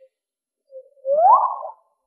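A short electronic sound effect: a brief low note, then a single pitch glide rising steadily over about half a second.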